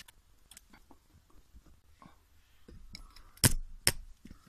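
Hands handling and bending an artificial vine's wire-cored branches: light scattered rustles and small clicks, then two sharp knocks about half a second apart near the end.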